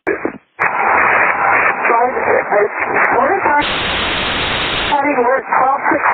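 Unintelligible, garbled VHF radio transmission from the Cirrus SR22 N591WA: a voice buried in radio noise, with about a second and a half of steady static hiss from about three and a half seconds in, then more broken speech.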